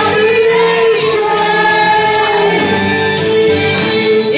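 Amplified group singing into microphones over backing music, with long held notes.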